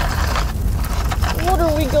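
A person talking, starting a little past halfway through, over a steady low rumble.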